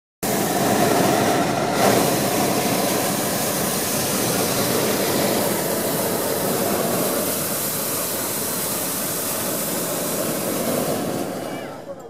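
Hot-air balloon propane burner firing in one long continuous blast to heat the envelope for take-off, fading out shortly before the end.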